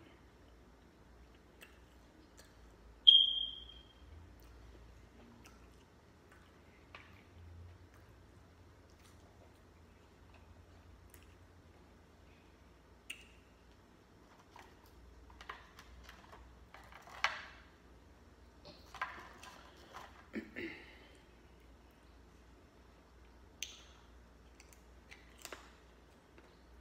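Tableware and food being handled at a meal, in a quiet room. About three seconds in there is one sharp, briefly ringing clink against a glass bowl. Later come scattered soft clicks and crackles as the crab legs and shrimp are picked at and eaten.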